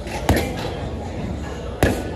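Two sharp thuds about a second and a half apart, over a steady background din of a gym.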